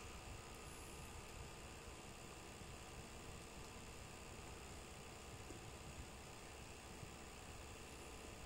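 Near silence: a faint, steady hiss with a low hum underneath, the room tone of the recording.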